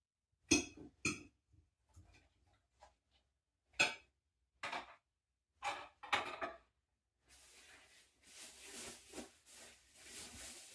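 Kitchen dishes and cutlery clinking and knocking at a sink, about six sharp separate clinks spread over the first six or so seconds, followed by a soft steady rustle for the last few seconds.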